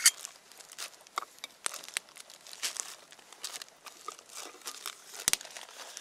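Plastic packaging and gear crinkling and rustling as they are handled and rummaged through, with one sharp knock about five seconds in.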